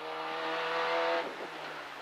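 Peugeot 205 F2000 rally car's four-cylinder engine heard from inside the cabin, holding a steady note with road and tyre hiss over it, then falling noticeably quieter a little past a second in.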